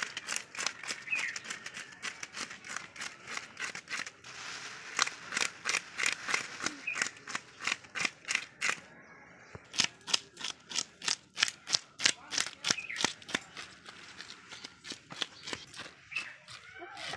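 Kitchen knife scraping the scales off a whole rohu fish: a fast run of sharp, rhythmic scraping strokes, about four a second, with two short pauses.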